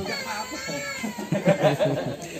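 A small child's high-pitched, drawn-out vocal sound with a gently falling pitch, followed by choppy adult voices.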